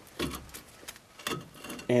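A few light clicks and knocks of a steel disc brake caliper being handled and worked apart after its screws are removed, with the clearest knocks about a quarter second in and just after a second in.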